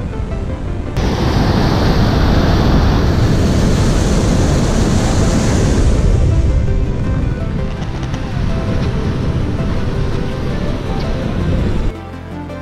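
Water rushing and splashing along a ferry's hull as it cuts through the lake, mixed with wind on the microphone. The rush starts suddenly about a second in and eases off in the second half, with background music underneath.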